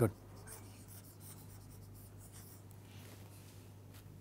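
Faint scratching of a stylus on a writing tablet in a few short strokes, over a steady low hum.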